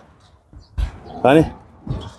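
Sheep bleating in a flock: a couple of short, wavering calls about a second in.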